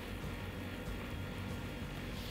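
Onion paste frying in oil in a pot: a faint, steady sizzle, with faint music underneath.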